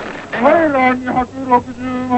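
A demonstrator's voice chanting on a held, nearly level pitch, in three drawn-out phrases.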